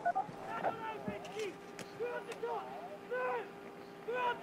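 Ski guide's short shouted calls to a visually impaired skier, heard over the helmet radio headset microphone: several quick high-pitched calls in succession, directing her down the Super-G course.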